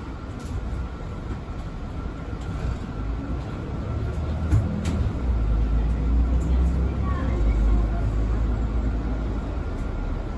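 Mercedes-Benz Citaro 2 city bus heard from the front of its cabin, its engine and drivetrain rumbling as it drives. The low rumble swells about five seconds in, as the bus pulls out of a turn and gathers speed.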